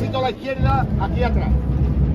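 A voice calling out over crowd noise, with a steady low rumble beneath.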